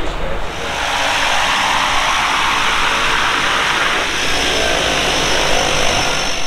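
Floatplane engine running close by: a loud, steady rush with a thin high whine over it, rising about half a second in.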